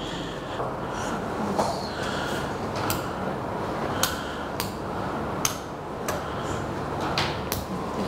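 Classroom room noise: a steady hum with about half a dozen small sharp clicks and knocks scattered through it, most of them in the second half.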